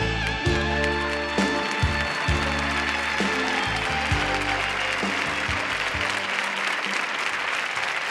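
The closing bars of a live band playing a ballad, with a bass line under a long held high note, die away about four seconds in. Audience applause swells beneath them and carries on alone after the music ends.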